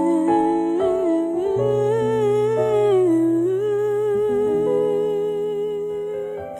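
Slow ballad music: a wordless humming voice carries a wavering melody with vibrato over held keyboard chords.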